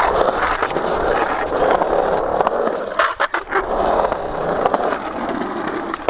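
Skateboard wheels rolling over rough concrete, a steady grinding rumble. About halfway through the rumble briefly drops out, with a few sharp clacks.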